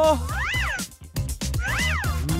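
Two short meow-like cartoon sound effects, each sliding up and back down in pitch, about a second apart, over background music.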